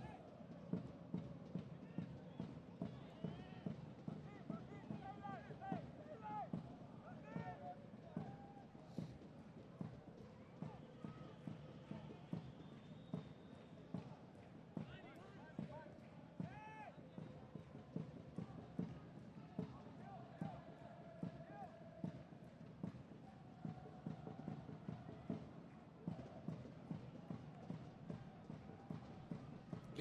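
Stadium sound at a sparsely attended football match: a steady knocking beat of about two strikes a second, with scattered shouting voices from the pitch and stands.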